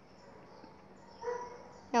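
Quiet room tone with one short, faint animal call a little over a second in.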